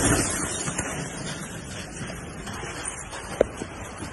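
Aftermath of a mortar bomb exploding close overhead: a loud rush of noise that fades steadily, with the phone's microphone being knocked about, and one sharp knock about three and a half seconds in.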